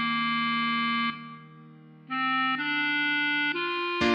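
Clarinet playing a slow melody at half speed: one held note, a pause of about a second, then three notes stepping upward.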